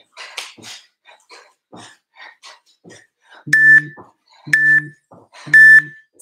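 Interval timer beeping three times, one beep a second in the second half, counting down the end of the work interval. Before the beeps there are faint short sounds from the tuck jumps.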